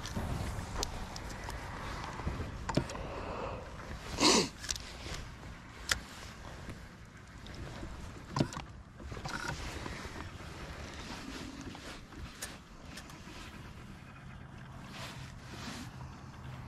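Steady low outdoor background of wind and water around a boat on open water. A few short knocks and clicks stand out, the loudest a brief burst about four seconds in.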